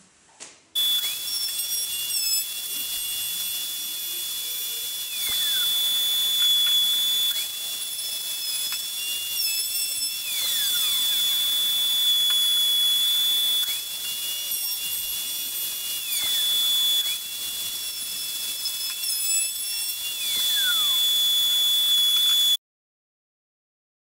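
Plunge router running as it bores 20 mm bench-dog holes through a jig into the bench top. A steady high whine runs throughout, with a second note that drops in pitch several times as the bit cuts. The sound cuts off suddenly near the end.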